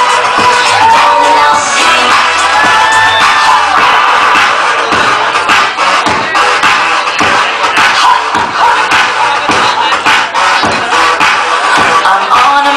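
Loud dance music over a nightclub sound system, with a crowd cheering and shouting over it.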